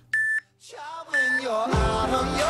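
Two short electronic countdown-timer beeps, one second apart, counting down to the start of a plank interval. Pop music with singing fades in behind them and gets louder near the end.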